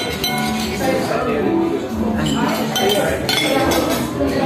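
Metal cutlery clinking against ceramic dinner plates in several sharp clinks, over the chatter of diners.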